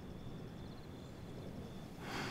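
Faint night ambience: insects chirping in a quick, even pulse with a steady high trill above it, over a low background rumble.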